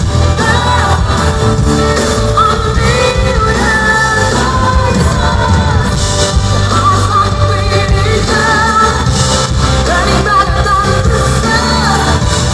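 Live pop band performance: a female lead vocalist sings a melodic line over drums, bass, electric guitar and keyboards, loud and steady.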